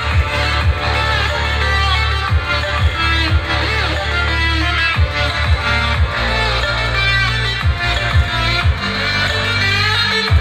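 A song played loud through a Polytron Cinema X tower speaker, driven by a car double-DIN head unit at volume 30. It has deep, sustained bass notes, regular beats and a plucked melody.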